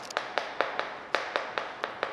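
Chalk tapping and scraping on a chalkboard while words are written by hand: a quick, irregular series of sharp clicks, about four a second.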